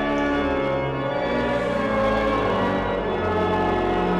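Cathedral pipe organ playing sustained chords, the held notes changing in steps about every second.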